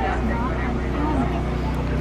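Background chatter of several people talking over a steady low rumble.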